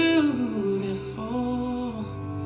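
A song with a singing voice holding long notes that slide down in pitch, over soft accompaniment.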